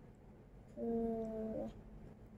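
A child's closed-mouth hum, 'mmm', while eating: one steady note held for about a second, starting just before the middle.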